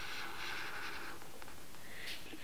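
Felt-tip marker drawing one long stroke across paper, a steady dry scratch that fades out near the end.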